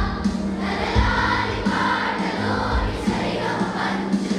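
Children's school choir singing in unison, with steady held low notes beneath the voices.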